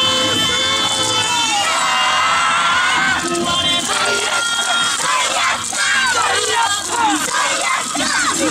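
Yosakoi dancers shouting and yelling together in many overlapping voices as their dance music ends in the first second or two.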